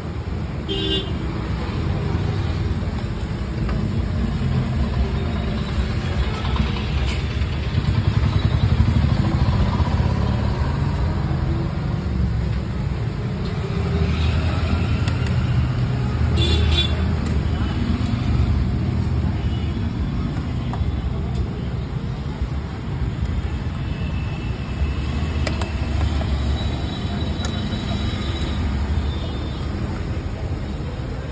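Street traffic: a steady rumble of passing motorbikes and other vehicles, with short horn toots about a second in and again around sixteen seconds in.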